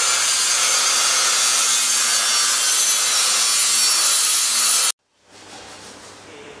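A loud, steady hissing noise with no rhythm or strokes, which cuts off suddenly about five seconds in.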